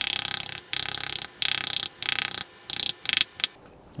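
A metal rod beating the rind of a halved pomegranate in quick runs of sharp taps, about seven runs with short pauses between them, knocking the seeds out into a glass bowl.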